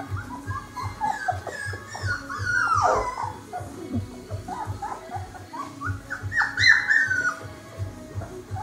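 Young puppies whining and yelping in high, sliding calls, with one long falling whine about three seconds in and the loudest burst of yelps late on, over background music with a steady beat.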